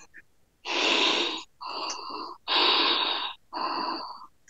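A person breathing hard: four heavy, hissing breaths in a row, each about a second long.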